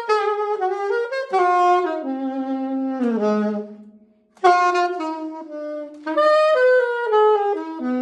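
Unaccompanied saxophone playing improvised jazz lines: a phrase of quick notes that settles onto a held low note, a short breath pause a little past halfway, then a new phrase of fast notes.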